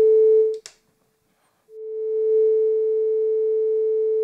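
Frap Tools BRENSO analog oscillator playing a steady single-pitch tone through the mixer as its patch cable is plugged in. It cuts off with a click about half a second in, then swells back in and holds.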